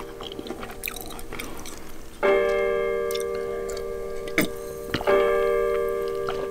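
A bell-like chime rings out twice, about three seconds apart, several notes at once that each fade away slowly. Faint mouth clicks come before the first chime.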